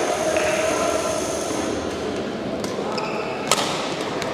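Badminton racket strikes on a shuttlecock during a rally: a few sharp hits in the second half, the loudest about three and a half seconds in, after sports-hall crowd murmur that quiets about halfway.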